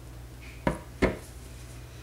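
Two sharp knocks about a third of a second apart: plastic containers, a large soap-batter bucket and a measuring jug, set down on a stone countertop.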